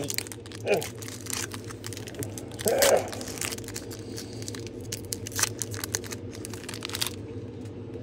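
Foil wrapper of a Pokémon booster pack being torn open and crinkled by hand, a run of small crackles and rips, as the cards are slid out. A low steady hum runs underneath.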